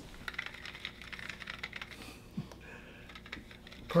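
Faint, irregular light clicks and rustles of a small plastic earbud holder being handled and opened as a clip-lead wire is pulled out of it.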